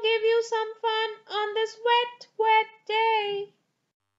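A reading voice pitched very high and sing-song, in short phrases that stop about half a second before the end: speech only.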